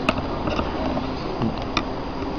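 Hard plastic parts of a collectible robot figure being handled as its cape piece is fitted: about three small, sharp clicks over a steady background hiss.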